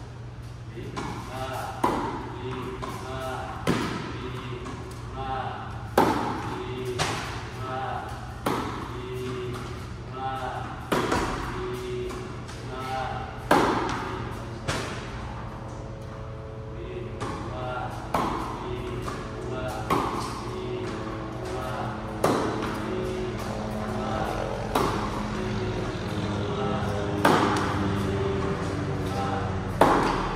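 Tennis ball struck by rackets in rally, a sharp pop roughly every two seconds with a short echo from the indoor hall, over background music.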